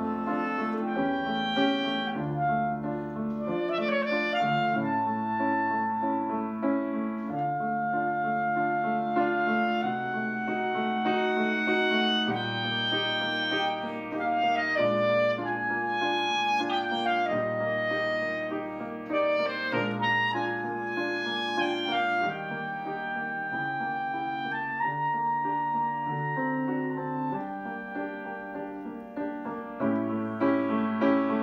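Clarinet playing a melody in held notes, accompanied by a grand piano playing steady repeated chords and bass notes.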